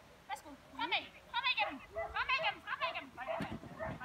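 Dog yelping and barking in about four short, high-pitched, quavering bursts.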